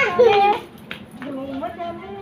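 A young child's high voice, loud for the first half second, then quieter talk.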